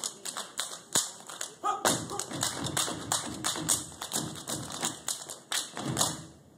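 Step team stepping in unison: rhythmic stomps, claps and hand slaps at about four hits a second, stopping on a last hit at the end.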